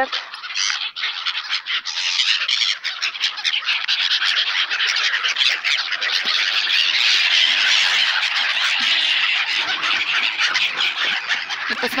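A large flock of gulls squawking and calling over one another: a dense, steady chorus of harsh calls.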